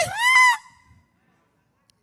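A man's preaching voice through a microphone: one short, high-pitched, strained shouted word in the first half second, then a pause with no sound.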